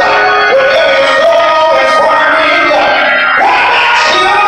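Gospel singing on a microphone with electric organ accompaniment: the voice holds long notes and slides between them over the organ's held chords.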